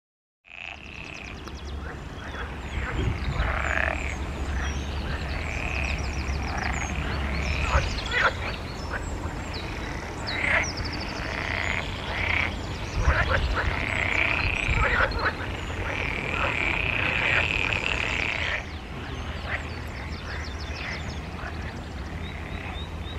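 European water frogs (green frogs) calling in chorus, with repeated croaking calls overlapping one another. The chorus starts about half a second in and thins out a little near the end.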